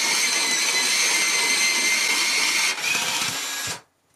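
Electric pencil sharpener motor whining steadily as it grinds a Brutfuner colored pencil to a point. A little under three seconds in, the pitch and level drop slightly, and the motor stops shortly before the end.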